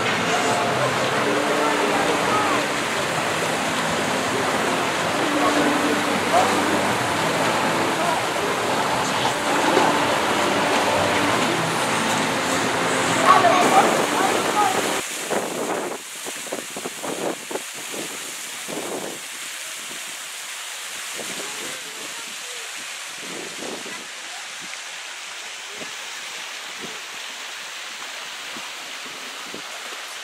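Background voices and chatter for about the first half. It then changes abruptly to the steady splashing rush of a mushroom-shaped pool fountain's falling water, quieter than the chatter.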